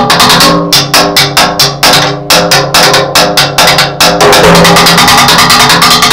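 Acoustic drum kit played hard and fast with sticks, a dense run of strokes several a second. About four seconds in it merges into a continuous wash of sound.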